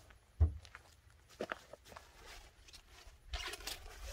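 Handling of a pop-up tent in its round nylon carry bag: a dull thump about half a second in, a few light knocks, then a short burst of fabric rustling near the end.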